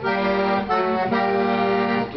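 Accordion playing three sustained chords, changing chord about two-thirds of a second in and again about a second in.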